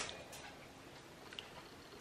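Quiet room tone with two faint ticks, one about a third of a second in and one about a second and a half in.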